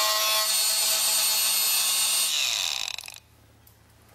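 Handheld electric bone saw running as it cuts through a cadaver's sacrum, a steady high whine over a grinding noise. Its pitch drops and it winds down to a stop about three seconds in.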